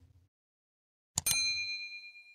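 Subscribe-button animation sound effect: a mouse click about a second in, followed by a bright bell ding for the notification-bell icon that rings on and fades away.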